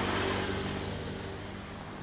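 A motor vehicle passing on a nearby road, its engine hum steady in pitch and slowly fading away.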